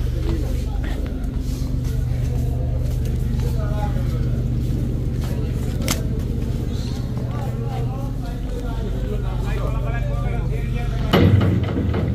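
Steady low hum of a river passenger launch's engine machinery, with people talking in the background. Near the end the hum falls away and louder nearby voices and handling noise take over.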